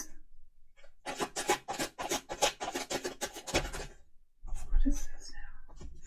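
A deck of tarot cards being shuffled: a fast, even run of crisp card flicks for about two and a half seconds, then a softer rustle of cards with a low thump as they are handled on the table.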